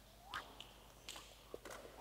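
Faint footsteps of dancers on a wooden studio floor: a short squeak of a shoe sole and a few light scuffs and clicks.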